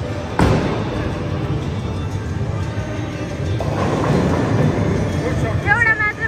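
Bowling ball landing on the wooden lane with a thud about half a second in, then rolling with a steady low rumble. About four seconds in there is a louder clatter, which is the ball striking the pins. Background music plays throughout, and a voice calls out near the end.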